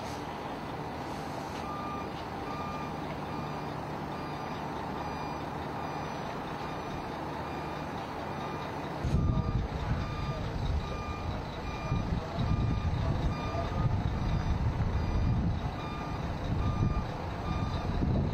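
A vehicle's reversing alarm beeping steadily, evenly spaced a bit under twice a second, starting about two seconds in. It sounds over a steady hum, and from about halfway through a louder, uneven low rumble joins it.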